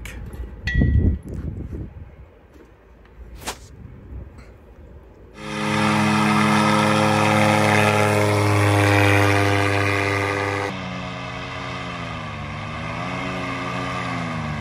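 A few clicks and a thump of hands working the paramotor frame and its straps. About five seconds in, a powered paraglider trike's paramotor engine comes in, running loud and steady at high power as the trike takes off. Near the end it is quieter, with its pitch wavering up and down.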